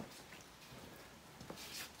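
Faint room tone with a few light clicks and rustles from the camera being handled as it moves.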